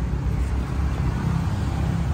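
A steady low rumble of a motor vehicle running, with no separate knocks or clicks.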